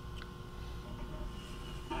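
Quiet room tone with a faint steady hum, and one faint click a fraction of a second in.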